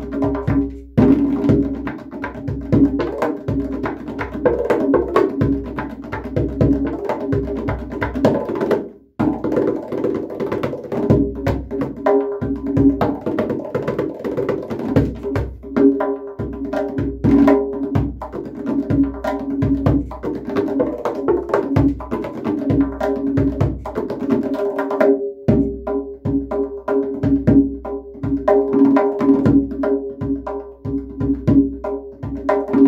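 Solo tombak (Persian goblet drum) played with fast, dense finger strokes, its skin ringing with a clear pitch under the strikes. The playing breaks off briefly twice.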